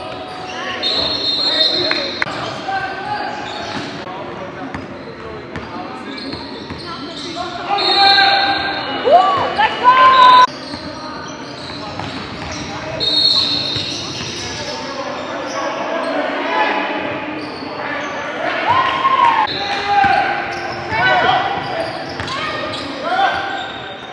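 Pickup basketball game sounds in a large echoing gym: the ball bouncing on the hardwood floor, sneakers squeaking in short sharp chirps, and players' voices calling out. The loudest squeaks and bounces come about eight to ten seconds in and again near the end.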